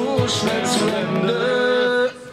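Live acoustic trio playing the final bars of a song: a voice singing over acoustic guitar, cello and cajón, ending on a long held note.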